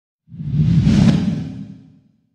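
A whoosh sound effect with a deep rumble underneath, swelling in about a third of a second in, peaking around a second and fading away, as an animated logo sting flies in.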